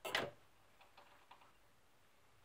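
The needle of a portable wind-up gramophone's soundbox is set down on a spinning 78 rpm shellac record: one sharp scraping clunk as it touches down, then a few faint ticks from the groove.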